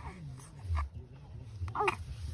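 A newborn baby making soft coos and grunts, over a low steady hum.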